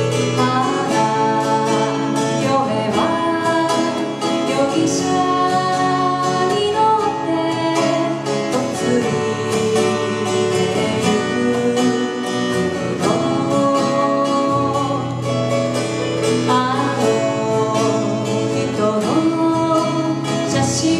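Live Japanese folk song performance: two acoustic guitars played together, with singing over them, continuing without a break.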